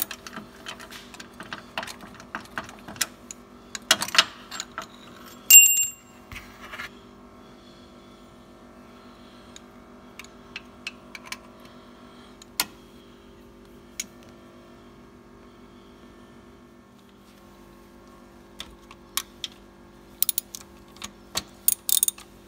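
Hand tools working on a car's starter motor: metal clicks and knocks, then a single bright metallic ping about five and a half seconds in. After that come sparse ticks over a steady low hum, and quick ratchet-wrench clicks near the end.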